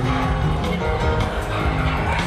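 Live pop music from a concert band, loud, with held bass notes and a steady drum beat.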